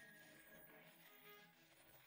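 Near silence, with only very faint background music.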